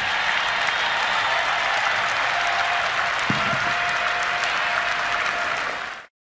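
An audience applauding steadily; the applause cuts off suddenly near the end.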